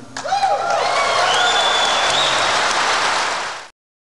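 Large audience applauding and cheering, breaking out a moment in, with a long high whistle partway through; the sound cuts off suddenly near the end.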